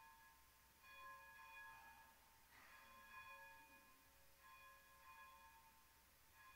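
Church organ playing faint, held chords in phrases of about a second each, with short gaps between them.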